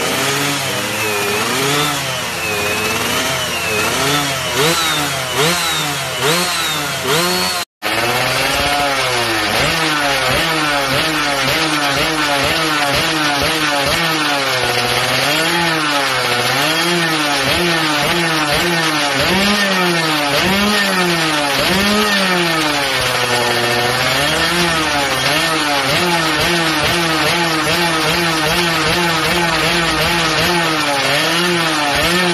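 Two-stroke road-race underbone motorcycle engines (116cc Suzuki FIZ R builds) revved repeatedly, the pitch rising and falling with each throttle blip. It starts as quick short blips, then after a brief dropout about 8 s in, a second bike runs on with a continuous series of revs, a few dipping lower.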